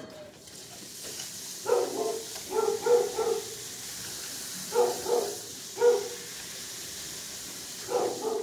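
Dogs barking in short clusters of pitched barks, about two, three, five and six seconds in, over a steady hiss.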